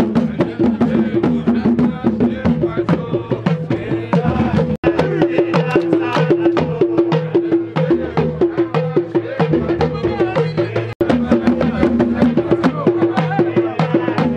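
Traditional folk drums, including a large barrel drum, beaten by hand in a fast, dense rhythm, with voices chanting along. The sound breaks off for an instant twice.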